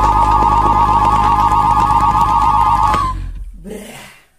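Electronic tone in the music track: a sustained warbling tone over a low drone, held for about three seconds, then fading out.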